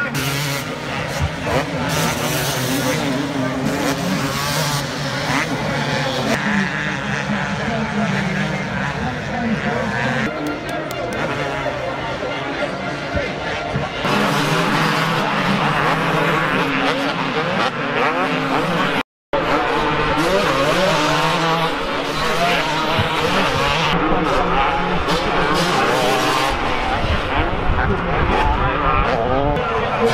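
Several motocross bikes racing on a dirt track, engines revving up and down as they accelerate, take jumps and pass by. The sound drops out briefly about two-thirds of the way through.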